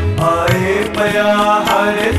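Shabad kirtan music: harmonium playing a melody over tabla, the bass drum's strokes sliding in pitch beneath sharp strokes on the treble drum.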